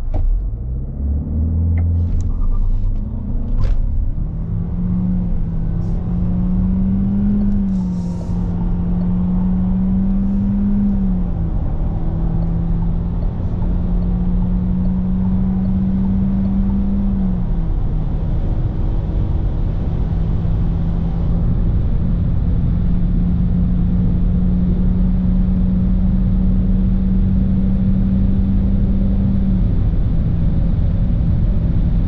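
In-cabin sound of the Renault Austral's 1.3-litre turbocharged four-cylinder mild-hybrid petrol engine at full acceleration from standstill to about 165 km/h through its CVT automatic. A steady engine drone climbs and drops back in pitch several times, like stepped gear changes, over a heavy rumble of road and wind noise.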